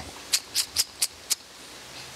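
Five short, sharp clicks in quick succession, about four a second, stopping a little over a second in.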